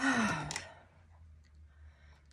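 A woman's sigh, a voiced breath out of about half a second that falls in pitch, followed by a few faint light clicks.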